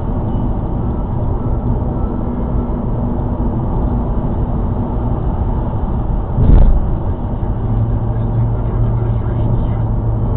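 Car road and engine noise heard inside the cabin: a steady rumble with a low hum, and one loud thump about six and a half seconds in.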